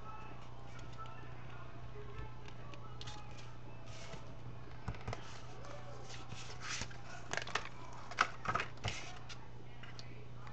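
Paper being handled and lined up on an envelope: soft rustles, with a cluster of sharper paper crackles in the last few seconds, over a steady low hum.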